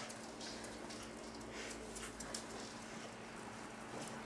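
Faint, scattered light clicks and scratches of pet rats' claws moving about on a wooden floor, over a steady low hum.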